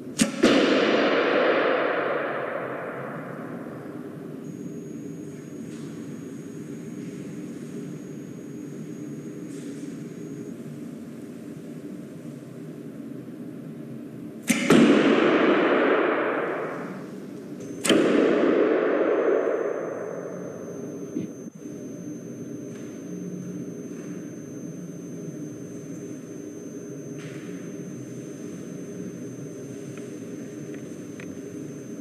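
A bow shooting arrows three times. Each shot is a sharp snap of the released string followed by a long echoing decay of two to three seconds. The first comes at the very start, and the second and third come about three seconds apart from about halfway in.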